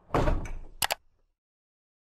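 Logo-animation sound effect: a loud swish, then two quick sharp clicks a little under a second in.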